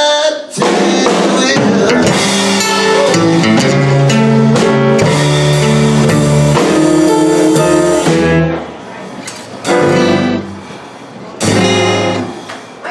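Live blues band playing, led by amplified acoustic guitar chords with drums behind. About eight and a half seconds in the music drops much quieter, with two loud short chord hits near the end.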